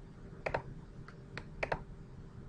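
A few sharp computer mouse clicks, unevenly spaced: a close pair about half a second in, a single click, then another close pair near the end.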